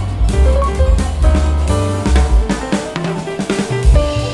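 Background music with drums and bass.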